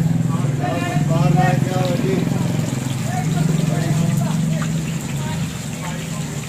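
Indistinct voices of people talking, over a steady low motor hum.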